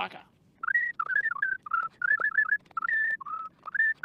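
A man whistling a tune: a string of short notes that rise and fall, starting about half a second in.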